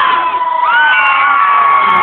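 A large crowd, many of them children, cheering and screaming loudly, with several long high screams each held for more than a second.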